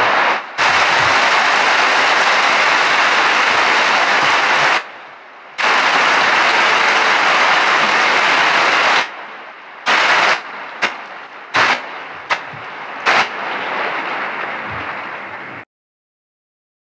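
Large indoor audience applauding: dense, loud clapping that breaks off briefly twice, then thins out to scattered claps about ten seconds in and dies away near the end.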